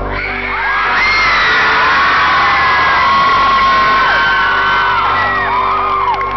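Concert crowd screaming and cheering after a song, with many high-pitched screams sliding and overlapping, swelling about a second in. A steady low tone runs underneath.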